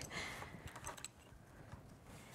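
Quiet handling sounds: a faint rustle and a few light clicks as a fabric quilt block and its stabilizer are moved on a cutting mat.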